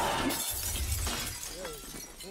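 Film sound effect of large glass shards shattering and crashing down, loudest at the start and dying away within about half a second into a low rumble. A man's pained grunting follows near the end.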